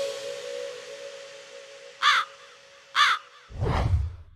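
The music dies away on a held note, then a crow caws three times about a second apart, the last call longer than the first two.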